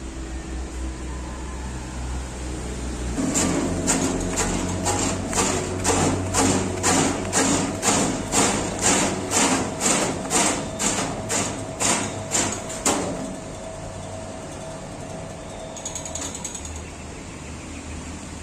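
Porang (konjac tuber) slicing machine: its motor starts a few seconds in. Then the blade cuts a tuber in about twenty sharp chops, roughly two a second, for around ten seconds. The motor runs on unloaded for a few seconds and stops near the end.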